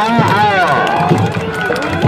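Singing voice over music, the voice sliding up and down in long arching phrases.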